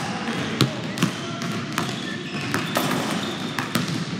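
Basketballs bouncing on a hardwood gym floor: a handful of separate, irregularly spaced bounces over a steady background hum.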